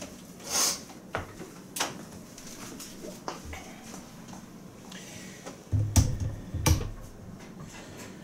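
Slow cookers being handled and set down on a kitchen counter: a few light clunks and clicks early on, then a heavier thud and two sharp knocks about six seconds in as a black slow cooker is set down on the stone countertop.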